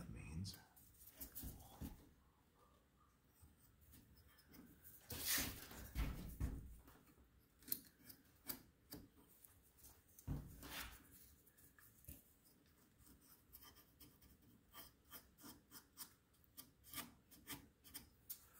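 Faint, scattered light clicks and taps of wooden grand-piano action parts, the hammer shanks and their knuckles, being handled and worked on, with a few louder knocks about five to six seconds in and again at about ten seconds, and quicker clicking over the last few seconds.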